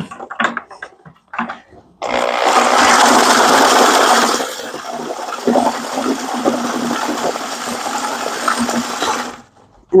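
Corded electric drill spinning a paddle mixer through wet concrete mix in a plastic bucket, the paddle churning and scraping the bucket. It starts suddenly about two seconds in, runs loudest for a couple of seconds, then settles to a lower, steady run and stops just before the end.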